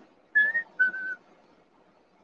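A man whistling two short notes, the first sliding slightly upward and the second a little lower and held a moment longer.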